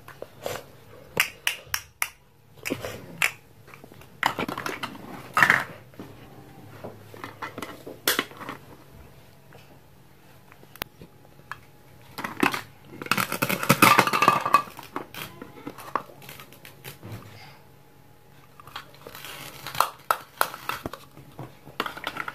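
Hard plastic toy fruit pieces clicking and knocking on a plastic cutting board and plate, with rasping rips of velcro as fruit halves are pulled or cut apart with a plastic knife; the longest rip comes just past the middle.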